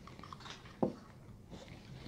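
Quiet room with faint handling sounds of a glass bottle at a table, and one short knock a little under a second in.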